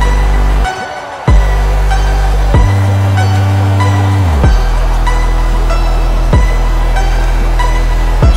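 Background electronic music with a heavy, sustained bass and short falling sweeps about every two seconds. It drops out for about half a second near the start and comes back in on a hit.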